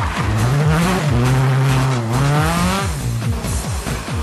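Rally car engine revving hard as the car accelerates past, rising in pitch twice, the second time about halfway through. Background music with a steady beat plays throughout.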